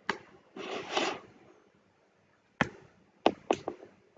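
Handling noise on a workbench: a sharp click, a brief rustle about half a second in, then a single click and a quick cluster of sharp taps near the end, as wires and small tools are moved about.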